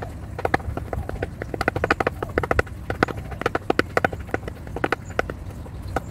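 Two hens' beaks pecking rapidly at chia seeds in a clear plastic basin: quick, irregular hard taps on the plastic, several a second, thickest in the middle of the stretch.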